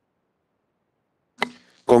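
Dead silence, then a single short click about a second and a half in, followed right after by a man starting to speak.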